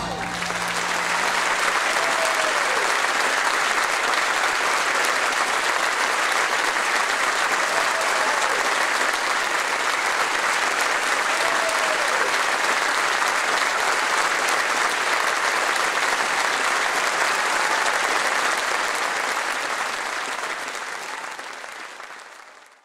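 Theatre audience applauding steadily after a song ends, fading out in the last few seconds.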